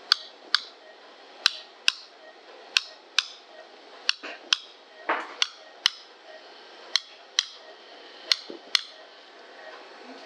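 Sharp, brief clicks coming in evenly timed pairs, about half a second apart within each pair, with a new pair roughly every second and a half. A short muffled voice-like sound comes about five seconds in.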